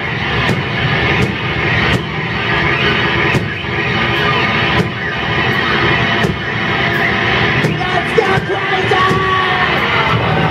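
Live stoner metal band playing loud: distorted electric guitars and bass over drums, with a steady beat of cymbal and drum hits.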